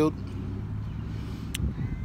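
A steady, low rumble of an idling vehicle engine, with a single sharp click about one and a half seconds in.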